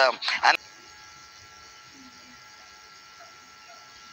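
A man's voice says one short word, then a faint steady electrical hum with a few thin steady tones and no other sound for the rest.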